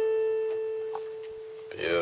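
A single note on a portable electronic keyboard, held and slowly fading away. Near the end a man's voice starts.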